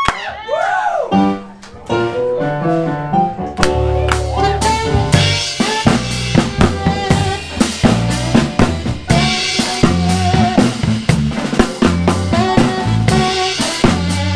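Small live band playing a New Orleans-style tune, with the drum kit (snare, kick, cymbals) up close over electric bass, organ, electric guitar and alto sax. A quieter, sparse opening gives way about three and a half seconds in to the full groove with steady drumming and a strong bass line.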